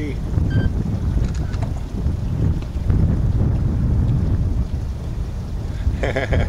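Wind buffeting the microphone from a moving boat: a heavy, uneven low rumble with no clear engine note.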